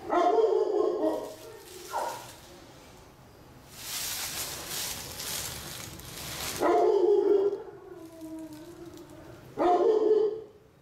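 A dog barking in several long calls of about a second each, one trailing off lower in pitch. Between the calls there are about three seconds of rustling noise.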